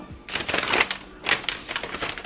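Paper instruction leaflet rustling and crackling as it is unfolded, in two spells of crinkling, about half a second in and again just past a second in.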